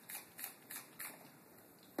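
Hand trigger-spray mister misting distilled water onto a watercolor palette to rewet the dried paints: four quick spritzes about a third of a second apart, each a short hiss, followed by a sharp knock near the end.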